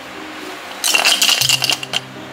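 Loose pieces rattling inside a hollow old doll as it is shaken: a quick, dense run of clicks starting about halfway in and lasting about a second. Faint background music runs underneath.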